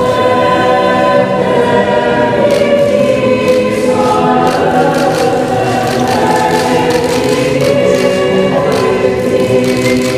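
A choir singing slow, held chords, the notes changing every few seconds.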